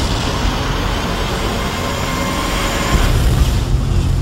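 Loud, sustained rushing roar of movie-trailer sound design: a steady wall of noise over a deep rumble, with a heavier low hit about three seconds in.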